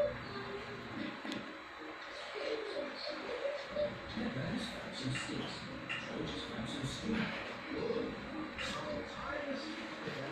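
Faint voices talking in the background, with a few light clicks.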